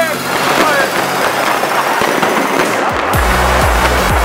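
Many fireworks and firecrackers going off in quick succession, a dense crackle of bangs and pops. About three seconds in, electronic music with a heavy bass beat comes in over them.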